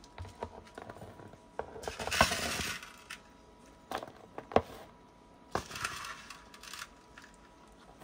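A metal spoon clinking and scraping against a metal wok as sugared coconut strips are scooped out onto a woven tray: a string of sharp clinks with short scraping rushes, the loudest clink about two seconds in.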